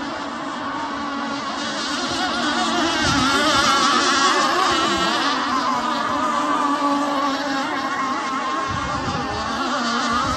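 Engines of radio-controlled racing hydroplanes running flat out around the course, a continuous high whine whose pitch wavers up and down as the boats turn and run the straights. It grows louder over the first few seconds as the boats pass closest, then eases slightly.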